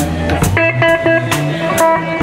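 Live blues band playing: an electric guitar fill of short picked notes between sung lines, over drums with regular cymbal strokes.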